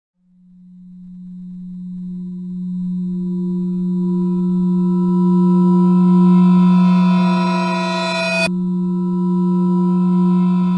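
A sustained low drone tone fading in from silence and swelling louder, its higher overtones gradually building into a shimmering chord. About eight and a half seconds in, a sharp click cuts the upper overtones, which then return over the steady low tone.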